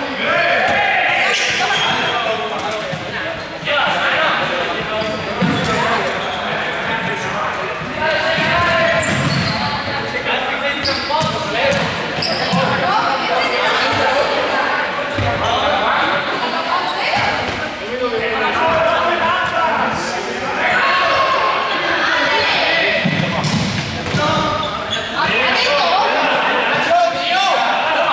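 Balls bouncing on the hard floor of a large sports hall, mixed with many players' overlapping shouts and calls as they play.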